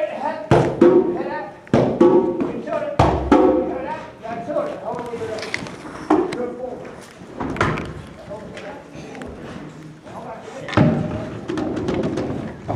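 People talking, with a few scattered single hand strikes on djembe drums, irregular rather than a steady beat.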